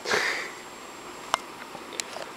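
A single short sniff at the start, followed by a sharp click about a second later.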